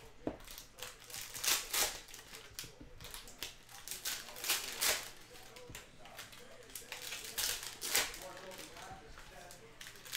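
Foil trading-card pack wrappers crinkling and tearing, with glossy cards sliding and flicking against each other as they are handled, in short, sharp bursts at irregular intervals.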